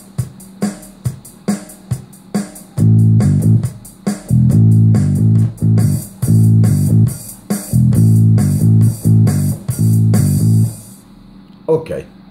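Metronome click ticking about twice a second, then from about three seconds in a loud bass line played in short repeated phrases over the click as it is recorded, the bass stopping about a second before the end.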